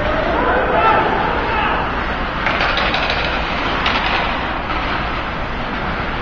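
Ice hockey play on a rink: skates scraping the ice and sticks working the puck over a steady noisy background, with faint shouting from players and a couple of sharper knocks of stick or puck.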